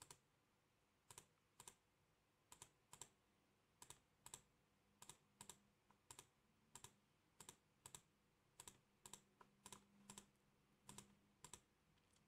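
Faint computer mouse button clicks, mostly in pairs about half a second apart, recurring roughly once a second.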